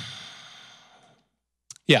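A man's long breathy exhale, close into a handheld microphone, loudest at the start and fading away over about a second. Speech starts near the end.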